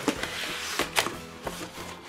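Corrugated cardboard book mailer being handled and opened: rustling with a few sharp scrapes and taps of card, over background music.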